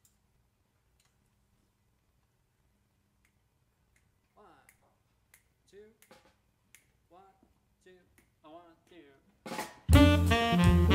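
Near silence, then faint finger snaps and a softly spoken count-off setting the tempo from about four seconds in. Just before the end the quartet comes in loud on tenor saxophone, organ, guitar and drums, starting a jazz blues.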